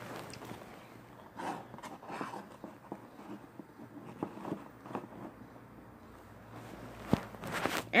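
Faint handling sounds of small toy figures being moved and stood up on a table: soft taps and scuffs, with a sharper knock about seven seconds in.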